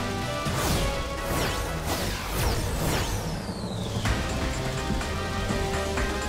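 Action-cartoon soundtrack: background music under quick whooshing sound effects, several in the first three seconds, then a long falling whine around the middle.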